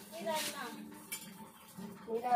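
A metal spatula scraping and stirring in a metal wok, with one sharp clink about a second in.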